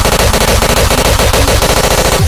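Hardcore techno track at a build-up: the steady distorted kick gives way to a very fast roll of repeated hits, dense and loud.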